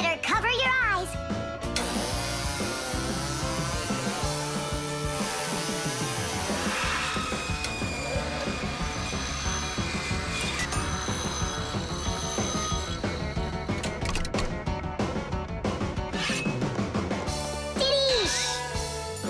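Cartoon background music over the whir and grinding of a small handheld circular saw cutting through a metal nail.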